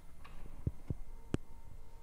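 Three light, sharp clicks in a quiet car cabin over a faint steady hum.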